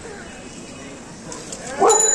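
Faint street background, then a dog starts whining near the end, a high, wavering whine.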